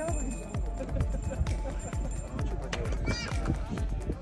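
Background music with a steady beat of low, falling kick-drum-like thuds, with a voice over it about three seconds in.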